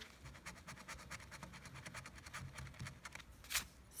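A coin scratching the coating off a scratch-off lottery ticket in rapid, even, faint strokes, with one louder scrape about three and a half seconds in.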